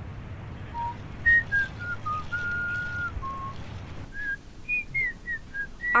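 A slow tune whistled in clear single notes that step up and down, with a short pause partway through, over a faint low hum: the music bed of a commercial.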